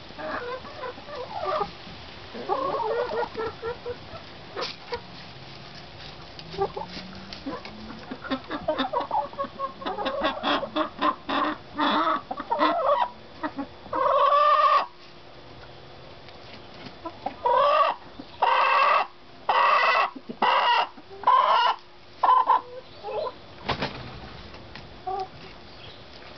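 A small flock of chickens clucking and calling, scattered and soft at first, then a run of loud, drawn-out squawks from about halfway, the loudest clusters a little past the middle and again near the end.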